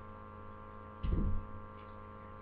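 Steady electrical mains hum, with a brief dull low thump about a second in, a handling knock as things are moved near the microphone.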